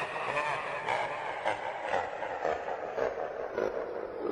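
The closing seconds of an electro swing remix track: a dense, rumbling, noisy texture with a faint pulse about twice a second, its treble steadily dulling as it winds down.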